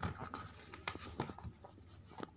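Paper pages of a book being turned by hand: a run of light, irregular paper rustles and crackles.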